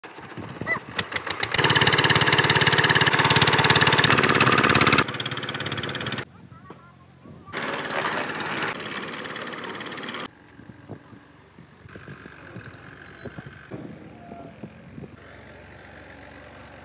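A concrete mixer's small stationary engine is hand-cranked and catches about a second and a half in, then runs loudly with a fast knocking beat. After a cut and a quieter stretch, the mixer runs again for a few seconds, followed by quieter machine noise with scattered knocks.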